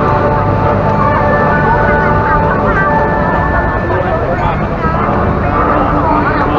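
Indistinct voices of people talking, over a loud, steady hum with several held tones.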